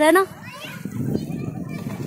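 A woman's brief spoken remark, then faint children's voices over a low, uneven rumble.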